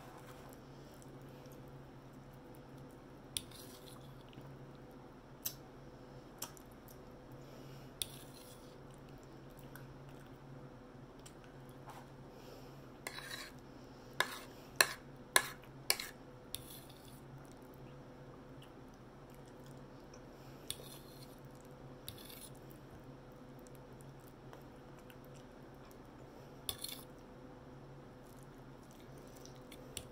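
A fork clinking and tapping against a dinner plate: scattered sharp clicks, with a burst of the loudest ones about halfway through. A steady low hum runs underneath.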